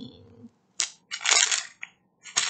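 Plastic packets of rhinestones being handled, crinkling in a few short bursts.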